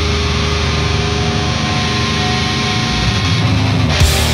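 Distorted electric guitars and bass from a live hardcore band holding a steady ringing drone with feedback tones between songs. It swells near the end as the band is about to come in.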